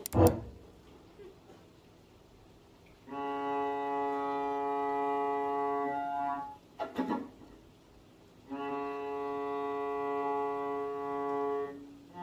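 Cello bowed in two long held notes, each lasting about three and a half seconds, with a short scratchy noise between them. The cello is not yet tuned.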